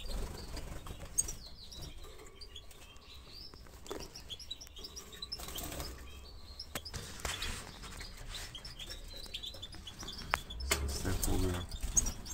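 European goldfinches chirping with short high calls, with bursts of wingbeats as birds flap between the perches and the wire of the cage a few times, the loudest near the end.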